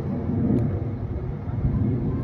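Steady low outdoor rumble with no distinct events, of the kind picked up by a phone's microphone in the open.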